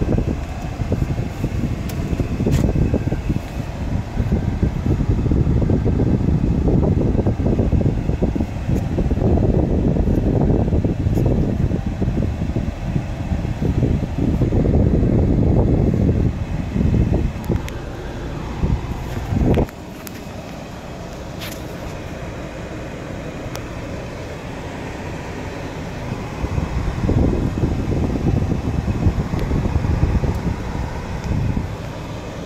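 Inside the cabin of a 2017 Volvo S90 just after starting: the engine idles under a loud, uneven rushing noise from the climate-control fan. The rush drops suddenly about two-thirds of the way through and builds again near the end.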